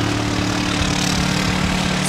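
A steady engine drone at one unchanging pitch, over an even hiss.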